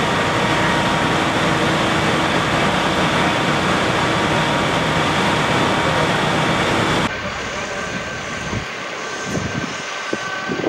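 Steady loud engine roar of fire-service machinery running at the fire scene. It cuts off suddenly about seven seconds in, leaving quieter street noise.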